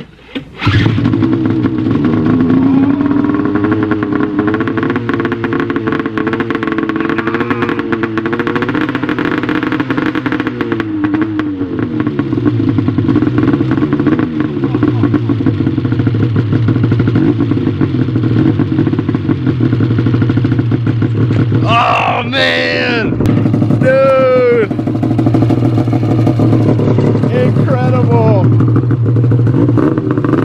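A 1999 Ski-Doo MXZ 600's two-stroke twin catches on a pull-start under a second in and keeps running, its revs wavering for roughly the first ten seconds before it settles to a steady idle. This is its first start after a voltage-regulator swap restored spark to the sled, which had been sold as a non-runner.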